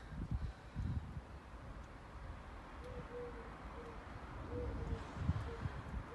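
A bird cooing faintly in the middle: a short run of about five low, hoot-like notes, over a steady low rumble on the microphone.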